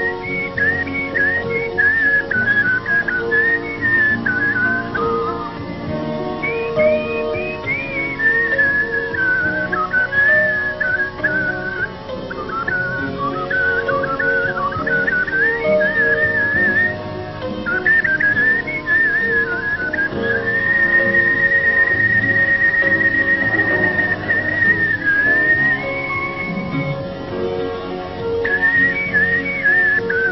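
A man whistling a song melody full of fast warbling trills and quick pitch slides, over an instrumental accompaniment. About two-thirds of the way through he holds one long steady note for several seconds.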